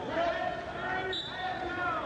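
Raised voices calling out during a wrestling bout, with a brief high squeak about a second in.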